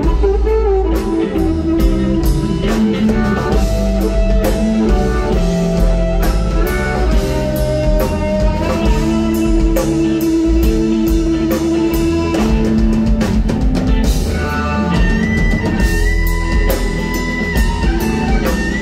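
Amplified blues harmonica played into a handheld microphone, holding long notes over a live band of drums, bass and electric guitar; a high held note comes in near the end.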